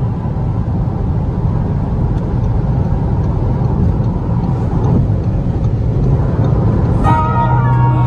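Steady low rumble of road and engine noise inside a car's cabin at motorway speed, with music coming in about seven seconds in.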